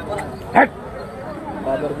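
A dog barking once, a single short, sharp bark about half a second in, over the chatter of a crowd.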